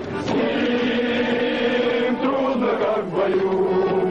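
A formation of male cadets singing a Russian military marching song in unison, with long held notes.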